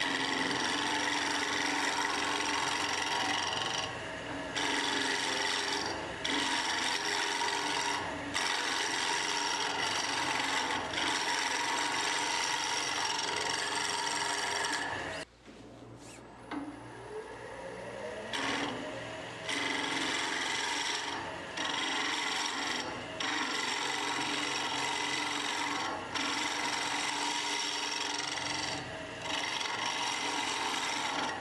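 A wood lathe spinning a small lacewood spindle while a handheld turning tool takes light cuts in the hard, brittle wood. It is a steady scraping, shaving sound over the lathe's whine, with short breaks every couple of seconds between passes. About halfway the sound briefly drops away, then a whine rises in pitch and the cutting resumes.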